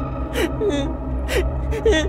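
A frightened child's voice giving several short gasps and whimpers as the violin is grabbed from him, over a low steady hum.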